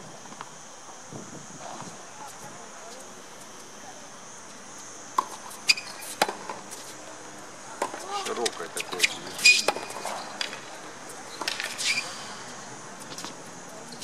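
Tennis rally on a hard court: sharp pops of the ball off rackets and court, several about half a second apart some five seconds in, then more through the second half. Voices can be heard in the background.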